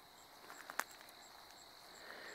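Quiet summer outdoor ambience: faint high insect chirps repeating about three times a second, with a few soft clicks about halfway through.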